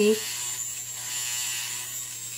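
Finishing Touch Flawless facial hair remover, a small battery-powered trimmer, running with a steady electric buzz as it is pressed against the cheek to take off fine facial hair.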